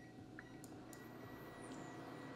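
Near silence over faint room tone, with a thin, steady high-pitched whine that begins about half a second in, from a portable induction burner being set to heat a saucepan up to a simmer.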